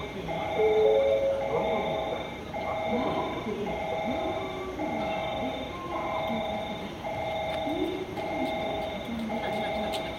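A railway electronic warning chime repeating a two-tone signal about once a second, warning of an approaching through train, with a voice speaking over it.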